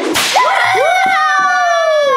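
A sharp whoosh as the boxes are lifted, then one long held high-pitched note lasting about a second and a half with a slight fall at the end.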